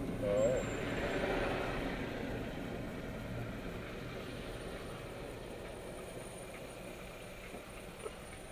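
Road and traffic noise inside a car's cabin, fading steadily as the car slows to a stop.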